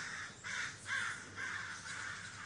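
A bird calling repeatedly: about five short calls, roughly two a second, faint behind the room.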